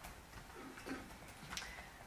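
Quiet meeting-room tone with a few faint, sharp clicks and taps scattered through it, like small handling noises at a table or keyboard.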